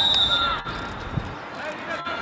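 Referee's whistle, one short steady blast at the start, signalling that the set piece can be taken, with voices of coaches and spectators around it.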